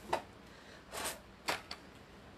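Four short light clicks and knocks of a metal bobbin and bobbin case from an industrial sewing machine being handled and set down on the sewing table during a bobbin change.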